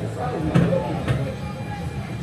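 Indistinct voices over a steady low hum, with two dull thumps about half a second apart.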